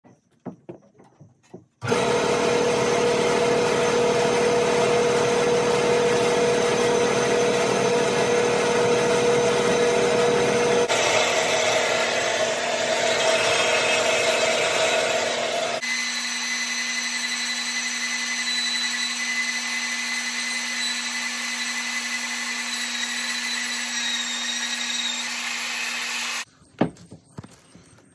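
A horizontal metal-cutting band saw running steadily through a steel beam, heard in two separate takes. It gives way near the end to a hand-held electric power tool running steadily on the steel I-beam, with a constant low hum under it.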